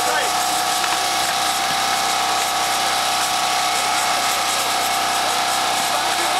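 A steady buzzing drone with a constant hum, unchanging in level throughout, with faint children's voices briefly near the start.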